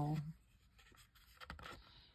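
A board book's stiff page being turned, a faint papery swish and rub about a second and a half in, after the tail of a spoken word at the start.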